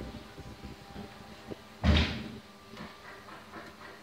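A single dull thump just before halfway, then faint short scratchy strokes of a felt-tip marker writing on a whiteboard.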